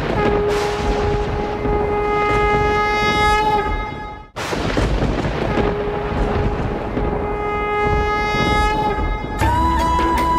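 Dramatic background score: two long, steady horn blasts, each lasting about three and a half seconds, over a low rumble, separated by a sudden brief silence. A flute melody comes in near the end.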